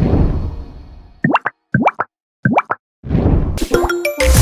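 Cartoon sound effects for an animated logo: a fading whoosh, then three pairs of quick rising bloops, then a whoosh that swells near the end.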